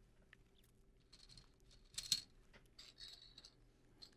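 Plastic Connect Four discs being handled and dropped into the grid: light clicks and soft rustling, with one short plastic clatter about two seconds in.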